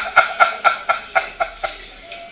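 A man laughing heartily: a run of short "ha" pulses, about four a second, fading away toward the end.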